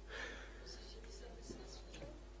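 Faint speech in the background, too low to make out, over a low steady hum.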